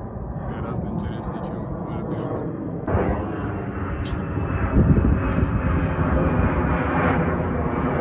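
Airplane flying over, a steady engine drone that grows louder about three seconds in.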